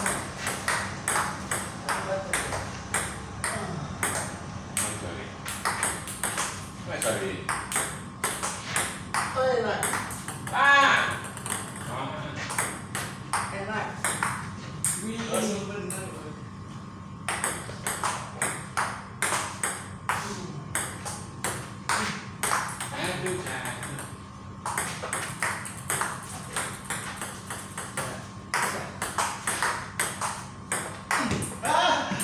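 Table tennis rally: the celluloid ball clicks against the paddles and the table a few times a second. The clicking stops for a second or two in the middle while a ball is fetched. A man's voice calls out loudly about ten seconds in.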